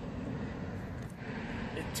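Steady low rumble of outdoor ambience, with distant traffic, swelling slightly with some hiss near the end.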